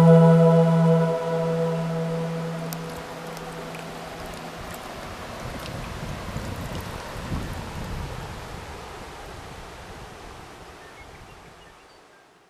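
A sustained music chord fades out over the first few seconds, leaving shallow river water running over stones. The water sound fades away near the end.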